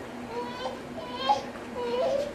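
Children's high voices calling and chattering in the background.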